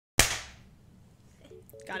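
A single sharp hand clap, made as a sync clap to line up the recordings, dying away over about half a second. A voice comes in near the end.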